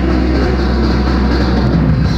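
A live progressive rock band playing, with a deep low note held steady under a dense, noisy wash of band sound.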